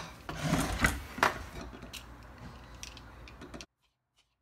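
Kitchen utensils knocking and scraping on a countertop and cutting board, with rasping strokes of a vegetable peeler. The sound cuts off abruptly near the end.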